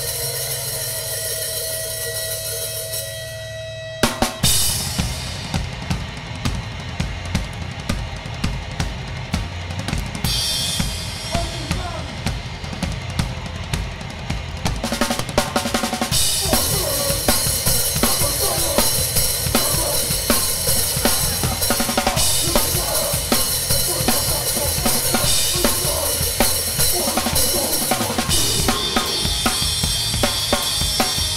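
Close-miked drum kit played hard and fast with a live hardcore band, kick, snare and cymbals to the fore over guitars and bass. The first few seconds hold sustained ringing notes, then the drums and full band come in together about four seconds in, getting denser and louder with more cymbal around the middle.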